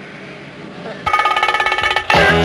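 About a second in, a rapid ringing starts suddenly: a fast, even trill on a few steady high pitches, like an electric bell.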